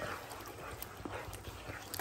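Faint sizzling of mutton masala frying in a kadai on high flame, with a few light clicks of the spatula against the pan.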